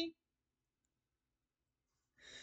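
Near silence: the tail end of a woman's sentence in the first instant, then a quiet pause.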